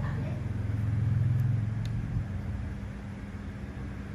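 Low rumble of a passing motor vehicle, swelling about a second in and fading away by two seconds.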